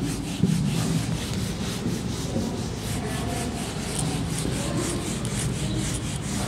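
Whiteboard duster rubbing across a whiteboard in quick, repeated back-and-forth strokes as marker writing is wiped off.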